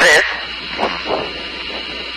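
A woman's voice ends a word at the start, then faint low voices continue over a steady background hum.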